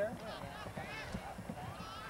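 Faint, distant chatter of spectators and players at a baseball field, with a few light low knocks.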